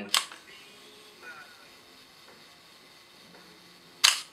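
Nikon FA 35 mm SLR fired on bulb: a sharp click just after the start as the shutter releases and the mirror flips up. About four seconds later a second click comes as the shutter closes and the mirror comes back down.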